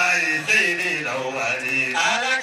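A man's voice chanting into a microphone in long, held notes that bend slowly up and down in pitch.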